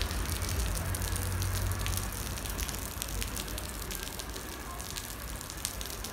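Rain from a small, localized shower falling on a wet asphalt street: a dense, steady patter of drops over a low rumble, easing slightly toward the end.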